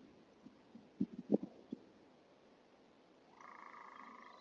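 Faint outdoor animal calls through a doorbell camera's microphone: a few short, low croak-like sounds about a second in, then a steady, higher call lasting about a second near the end.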